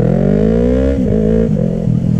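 Yamaha YZF-R3's parallel-twin engine pulling under acceleration: the engine note rises for about a second, drops sharply, then holds steady at a lower pitch.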